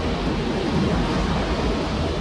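A steady, even rumbling noise, with no separate clicks or knocks.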